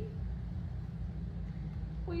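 Steady low rumble of background noise, with nothing else standing out above it.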